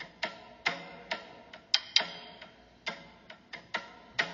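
Sharp ticking clicks with short ringing tails, about two to three a second at an uneven pace.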